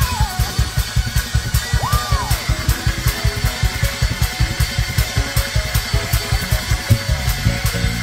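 Live church band music: drum kit and bass playing a fast, steady, driving beat, several hits a second.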